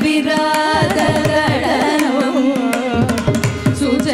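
Carnatic vocal music: women singing with sliding, ornamented pitch, accompanied by frequent mridangam drum strokes.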